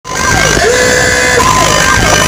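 Loud DJ sound-system music with siren-like electronic tones that swoop down and then hold steady.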